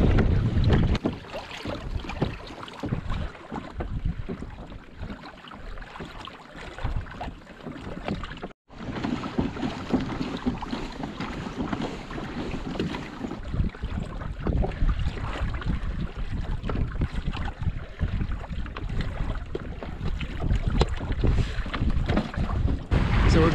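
Wind buffeting the microphone over water splashing and slapping against the hull of a sailing kayak under way, in uneven gusts. The sound cuts out for an instant a little past eight seconds in.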